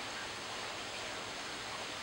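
Steady, even background hiss, room tone with no distinct event.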